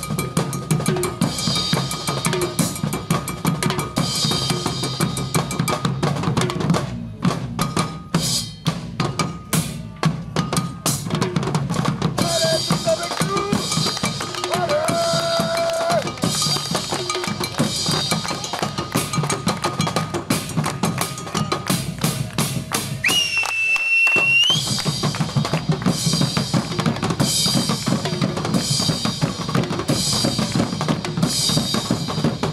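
Medieval folk band playing live: a Galician gaita bagpipe sounds a steady drone and melody over driving drums, including a large alfaia drum. Between about seven and eleven seconds in, the drone drops out and the drums carry on nearly alone. Near the end there is a brief break in which a single high note is held and rises before the full band comes back.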